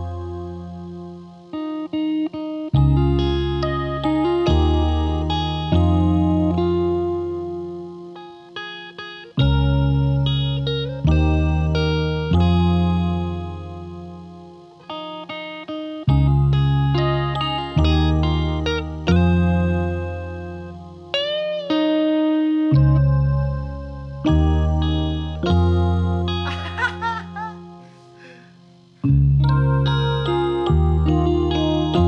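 Electric guitar and a Concertmate 980 keyboard playing an instrumental passage without vocals: deep bass notes struck every second or two and fading between strikes, under chords and single guitar notes, with a few bent notes near the middle and about two-thirds of the way in.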